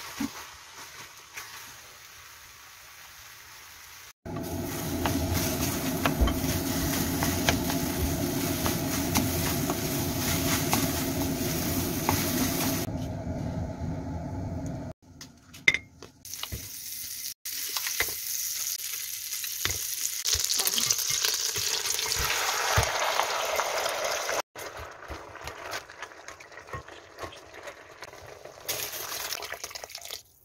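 Food sizzling in a hot pan as it is stirred with a wooden spatula: sliced onions being slowly caramelized, then chicken pieces frying in butter in a pot. Between the two long stretches of sizzling come scattered clicks and scrapes.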